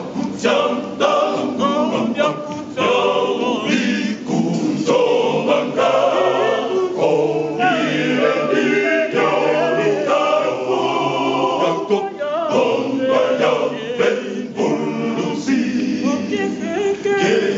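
A men's choir singing.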